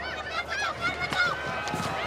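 Several high-pitched voices shouting short, overlapping calls.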